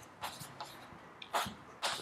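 Chalk writing on a blackboard: a few short, faint scratchy strokes, one about a quarter second in and two more in the second half.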